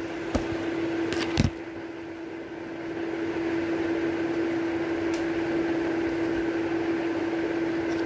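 Steady electric hum of a room appliance, holding one constant pitch, with two small clicks in the first second and a half.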